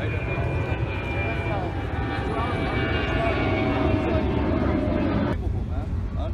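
A steady engine drone with several steady tones over a low rumble, a few tones slowly falling in pitch, cutting off suddenly about five seconds in.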